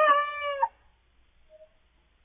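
A young cockerel crowing: one short, high-pitched crow with a wavering, slightly falling pitch that cuts off about two-thirds of a second in.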